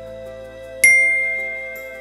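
A single bright ding sound effect about a second in, ringing and fading away over soft background music.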